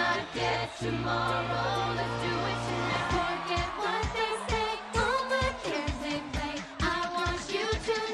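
All-female a cappella group singing a pop mashup: a lead voice over sung backing harmonies, with a held low vocal bass under them. About three seconds in, the bass drops out and a steady vocal-percussion beat comes in, about two beats a second.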